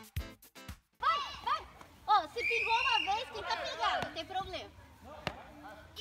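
Music with a steady beat for about a second, then an abrupt cut to people calling out and shouting. A few sharp knocks come near the end, from beach tennis paddles hitting the ball.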